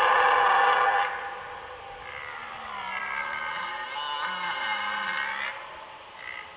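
Red deer stag roaring in the rut. A loud bellow fades about a second in, then a longer, quieter, drawn-out bellow ends near the end. It is the rutting call stags make to hold their hinds and scare off rival stags.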